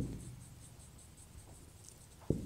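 Felt-tip marker writing on a whiteboard: a run of faint, quick strokes as a short phrase is written out.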